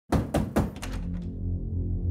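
Three quick knocks on a door, a few fainter taps after them, then a low steady music drone.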